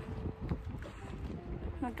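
Wind buffeting the phone's microphone, an uneven low rumble, with a faint click about half a second in; a woman's voice starts again near the end.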